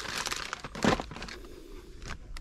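Plastic wrapping crinkling and rustling as a packaged item is handled, with a louder crinkle about a second in.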